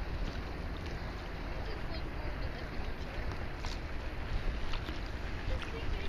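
Wind buffeting the microphone in a low, steady rumble over choppy water lapping around a kayak, with a few faint ticks.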